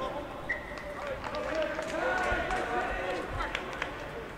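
Rugby players' shouts and calls on the pitch around a ruck, indistinct and overlapping, with a short high steady tone about half a second in.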